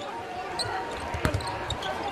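A basketball being dribbled on a hardwood court: a few separate bounces, the loudest about a second and a quarter in, over the hum of a large, sparsely filled arena.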